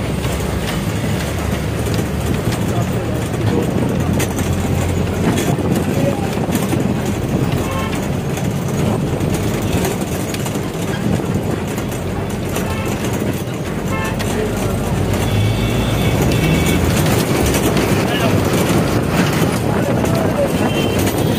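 Steady city road traffic noise heard from a moving vehicle, with voices mixed in.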